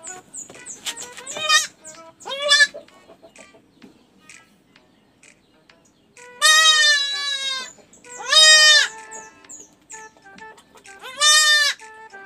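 Goat kid bleating while held down for an injection: two short calls in the first three seconds, then three long, loud bleats in the second half.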